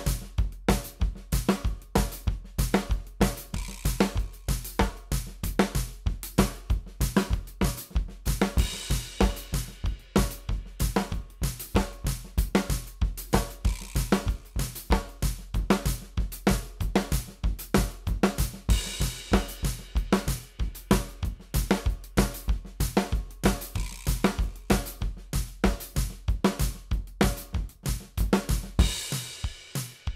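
Drum kit played in a fast, continuous paradiddle-based groove at about 190 bpm, accents falling on the single strokes, with a steady bass drum, hi-hat and snare. Brighter cymbal washes come in about a third and two-thirds of the way through, and the playing stops abruptly at the very end.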